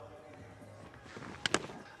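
Faint background music, then about one and a half seconds in a quick, sharp double knock as a cricket ball is played at and taken by the wicketkeeper.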